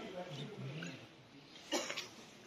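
A pause in an open-air speech: faint voices in the background for the first second, then a single short sharp sound near the end.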